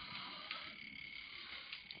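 Faint background room noise with a thin steady high-pitched tone, and a small click about half a second in.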